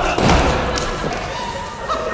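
A single low thump about a quarter second in, followed by people talking.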